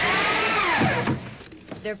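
Power drill driving a fastener into wood, its motor whine rising and then falling away as it winds down a little after a second in.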